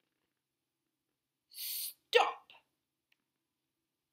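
A woman's voice exclaiming "Stop!" once, a drawn-out hissing "s" followed by a sharp, loud "top" about two seconds in.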